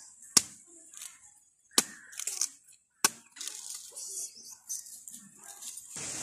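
A curved sickle-type blade chopping into palmyra palm fruits (nungu): three sharp strikes about a second and a half apart, with faint handling of the fruit between them.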